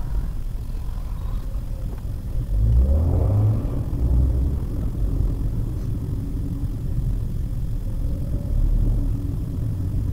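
Maruti Suzuki WagonR AMT driving, heard from inside the cabin as a steady engine and road rumble. About three seconds in, the engine note rises and grows louder as the car accelerates, then settles to a steady drone.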